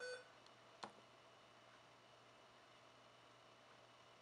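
A Soundstream VR-931nb car stereo giving one short key-press beep as its touchscreen is tapped, then a single faint click just under a second later; otherwise near silence.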